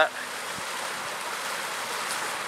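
Steady rush of water from small waterfalls spilling into a pond, with one faint click about half a second in.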